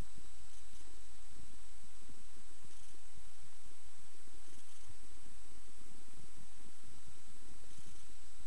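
Steady, muffled low rumble of a Cessna 172S's engine and propeller as heard in the cockpit during a roll down the runway.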